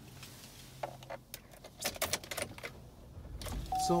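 A quick, irregular run of light clicks and taps, followed near the end by a steady high tone.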